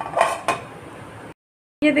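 A short metallic clatter of a pan being handled on the stove: a brief scrape and a sharp click in the first half second, then faint room noise that cuts off suddenly.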